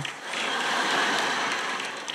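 Large audience applauding, swelling and then fading.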